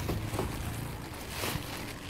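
Wind on the microphone over a low outdoor rumble, with a few brief rustles of plastic garbage bags being handled, the strongest about one and a half seconds in.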